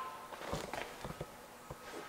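A few faint soft knocks and shuffles as a heavy truck wheel and tire is set down onto a bathroom scale, over a faint steady hum.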